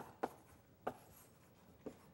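Chalk writing on a blackboard: a few short, faint chalk strokes and taps, spaced apart.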